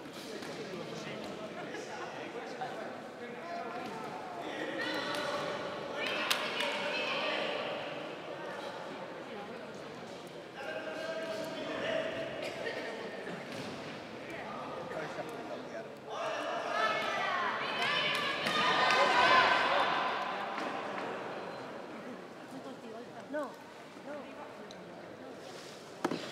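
Several people shouting over one another during a kickboxing bout, swelling about five seconds in and again from about 16 to 21 seconds, with thuds of gloved punches and kicks landing.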